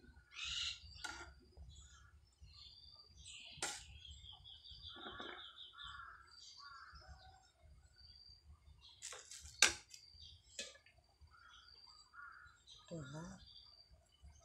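Small birds chirping, with a quick trill about four seconds in. Several sharp metal clinks from a ladle, the loudest a little before ten seconds in.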